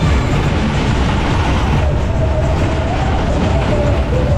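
Matterhorn fairground ride running at speed, its cars going round the undulating track with a loud steady rumble and rattle, heard from a seat on the ride.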